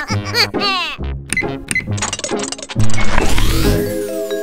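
Cartoon background music, with a character's short gliding vocal sounds at the start. About three seconds in comes a loud rising whoosh sound effect.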